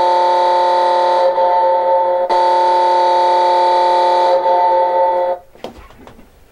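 Horn of a red novelty goal light: one steady chord of several tones held for about six seconds, then cutting off near the end.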